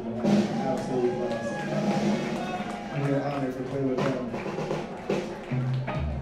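Rock band's instruments sounding loose, separate notes between songs: low bass guitar notes, short keyboard and guitar phrases and a few sharp knocks, over voices.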